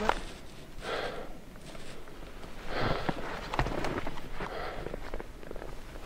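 A hiker breathing hard in heavy puffs while climbing a steep slope in snow under a loaded pack, with footsteps in the snow between breaths.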